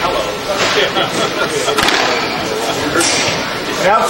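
Indistinct talking of people around a squash court, with one sharp knock about two seconds in.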